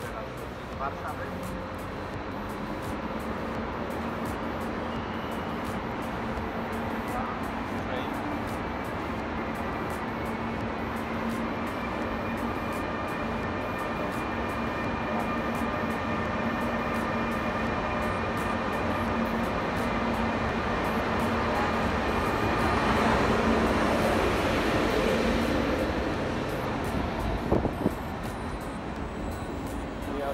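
Electric locomotive of a Flixtrain arriving at a platform under a glass station roof. Its steady electric hum and tones run under rolling wheel noise that builds as it nears, is loudest about three-quarters of the way through, then eases, with a few clacks near the end. The sound echoes under the roof.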